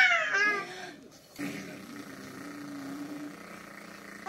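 Infant's high-pitched squealing coo that trails off in the first half-second, followed by a quieter, steady low hum lasting about two seconds.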